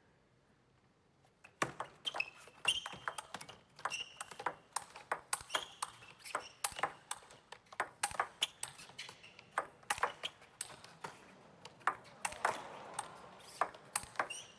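Table tennis rally: a plastic ball clicking off rubber-covered bats and bouncing on the table in quick, irregular succession, starting about a second and a half in after a quiet moment and running on as a long exchange. Short squeaks of players' shoes on the floor come between the strikes.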